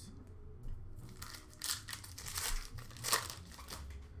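A sports-card pack's wrapper crinkling and tearing as it is opened by hand, in several short crackles, the loudest about three seconds in.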